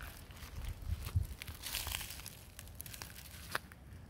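Dry leaf litter crackling and rustling in scattered small snaps, with low bumps from the microphone being handled.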